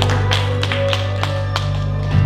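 Live worship band playing an instrumental passage: held bass and keyboard notes under a steady beat of short strikes, about four a second.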